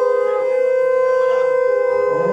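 Conch shell (shankha) blown in one long, steady, unwavering note during Hindu ritual worship.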